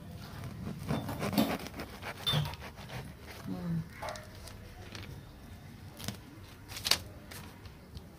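Serrated knife scraping and cutting through the fibrous skin of a ripe palmyra palm fruit, in short, irregular scrapes, with two sharper clicks about six and seven seconds in.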